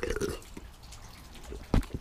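Soda being sipped from an aluminium can: a short liquid slurp at the start, then a sharp knock near the end.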